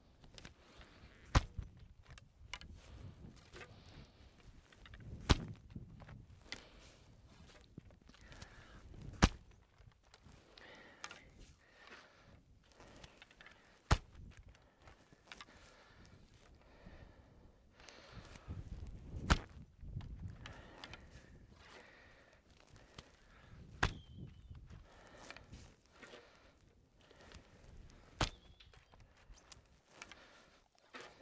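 English longbow (warbow) shot in rapid succession: seven sharp cracks of the bowstring on release, roughly one every four to five seconds. Softer rustling of arrows being nocked and drawn comes between the shots.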